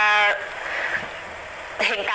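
A speaker's drawn-out 'uh' hesitation held on one steady pitch, then a pause of about a second and a half with faint hiss before talking resumes.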